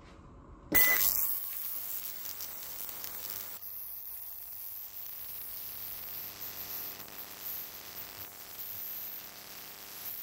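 VEVOR digital ultrasonic cleaner starting up with a short beep about a second in, then running with a steady hiss as it cavitates rust-removal solutions in tubs sitting in its tank.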